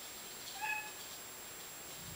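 A single brief high-pitched chirp or squeak, a little over half a second in, over faint steady room hiss.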